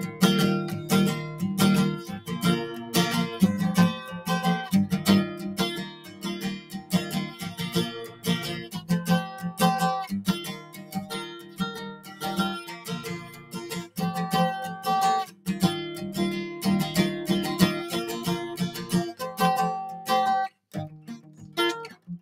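Acoustic guitar strummed steadily through an instrumental break between sung lines. The chords stop briefly near the end before the strumming picks up again.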